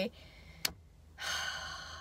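A woman's breathy sigh lasting about a second near the end, after a single short click, likely a mouth sound.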